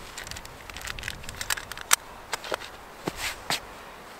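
Hands handling a small metal fire-kit tin and cotton balls: a run of small clicks and rustles, with one sharper click about two seconds in.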